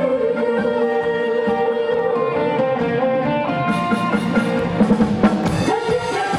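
Live band playing an instrumental passage of a Korean trot song, with pitched melody instruments over a drum kit; the drum strokes grow louder near the end.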